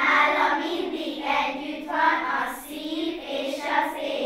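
A group of young schoolchildren singing a rhyming verse together, in a run of short sung phrases.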